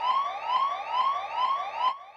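Electronic alarm siren from a red toy emergency beacon light: a quick rising whoop repeated about three and a half times a second, cutting off near the end. It signals an emergency call.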